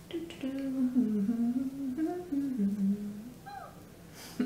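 A woman humming a tune to herself with her mouth closed for about three seconds, the pitch stepping up and down, ending with a short falling note.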